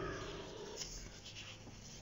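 Faint room noise in a pause between spoken sentences, with a soft rustle near the middle.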